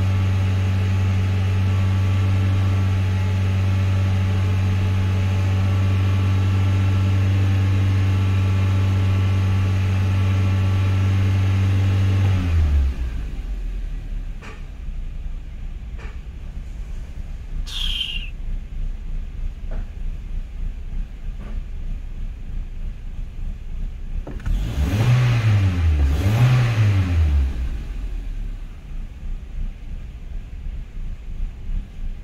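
A 2003 Toyota Corolla's 1.8 L four-cylinder engine running with a steady hum that suddenly drops away about twelve seconds in, leaving a low idle rumble with a few light clicks. Near the end it is revved twice, each rev rising and falling. The engine is misfiring on all four cylinders.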